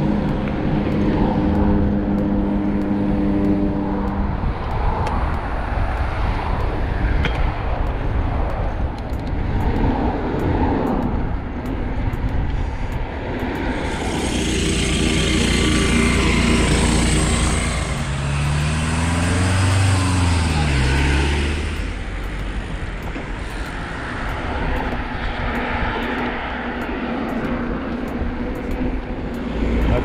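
Wind rushing over an action camera's microphone and tyre noise while riding a mountain bike beside traffic, with passing vehicle engines. About halfway through, a petrol push lawn mower running on the roadside verge is passed and is loudest for a few seconds.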